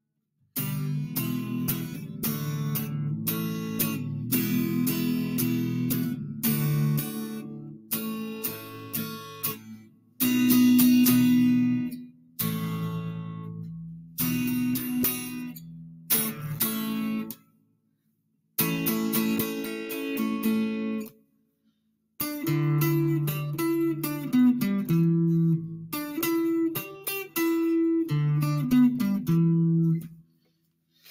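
Solid-body electric guitar strummed in chord phrases, broken by a few brief pauses of silence. The last third has moving note lines over the chords.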